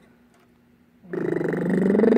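About a second of quiet, then a drawn-out human vocal sound starts, a hum or groan that rises slightly in pitch and has a rough, buzzing quality.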